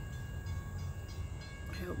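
Low, steady rumble of a passing train, with faint steady tones above it.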